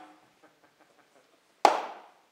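Sharp wooden knocks of an axe chop being acted out on stage: the first dies away at the start, light ticks follow, then a loud knock with a short ring near the end.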